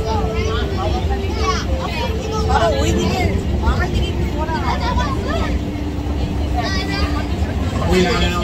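An open-air zoo mini train runs with a steady low rumble and a hum that shifts pitch in steps. A girl close by talks over it throughout.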